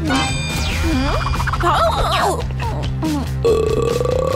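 Background music with cartoon sound effects. A sliding, falling effect comes at the start, then a long held cartoon burp begins about three and a half seconds in, as the cupcakes have been gobbled down.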